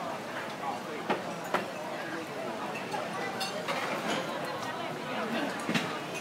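Chatter of many diners at crowded restaurant tables, voices overlapping, with a few sharp clinks of dishes and glasses.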